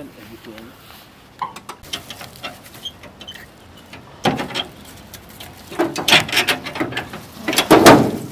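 Car bonnet being unlatched and lifted, giving several sharp metallic clicks and clunks from the latch and the steel bonnet. The loudest comes near the end as the bonnet goes up.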